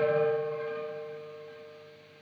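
Electric guitar played through a Carl Martin Blue Ranger pedal: a last chord rings out and fades away steadily.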